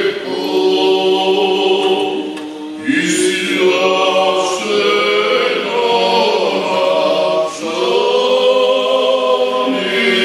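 Unaccompanied choir singing Orthodox liturgical chant in long, held phrases, with brief breaks between phrases about three and seven and a half seconds in.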